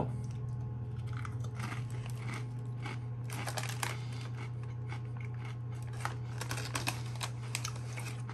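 A ridged Herr's potato chip being bitten and chewed: a string of irregular crisp crunches, over a steady low hum.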